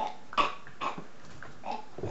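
A person's voice making three short cough-like sounds, the first the loudest.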